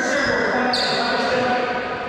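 Sneakers squeaking on a hardwood court floor, two short high squeaks, one at the start and one about three quarters of a second in, over indistinct voices.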